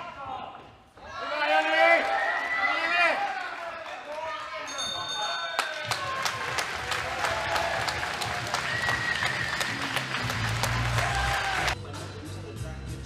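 Voices shouting in a hall, then a ring bell sounding about five seconds in to end the round. Clapping and music with a deep beat follow to the end.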